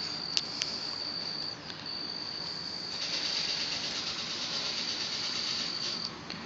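Insects calling outdoors in one steady, high, thin tone, with a short break about a second and a half in. Two light clicks sound about half a second in.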